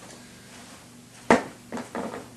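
Handling noise from trumpet mouthpieces being picked up and sorted: one sharp click about a second in, then two softer knocks near the end, over a faint steady hum.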